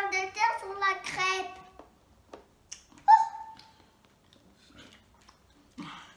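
A young girl's high-pitched wordless vocalizing, a few held sung notes through the first two seconds, then one short loud vocal sound about three seconds in, followed by faint clicks.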